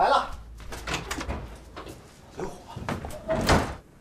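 A house door being opened, its handle and latch clicking, with a man's brief spoken words.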